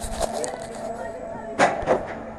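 Roller coaster train noise with riders' voices, and a short loud burst of noise near the end.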